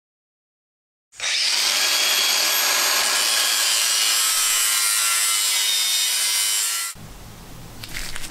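A power tool working on a piece of metal, running steadily for about six seconds. It starts about a second in, after silence, and stops suddenly near the end.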